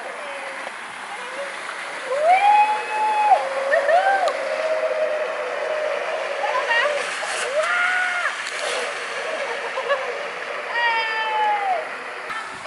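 Playground zip line trolley rolling along its steel cable: a rushing hiss that starts about two seconds in, with whining tones that rise and fall several times as the ride runs and swings.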